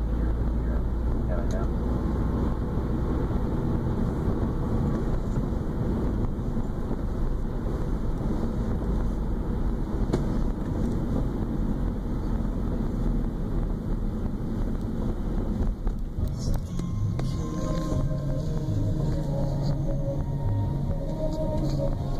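Steady road and engine noise inside a moving car's cabin, with voices faintly underneath. A few seconds before the end, pitched notes like music come in over the road noise.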